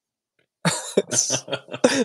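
A man laughing in breathy bursts, starting about half a second in.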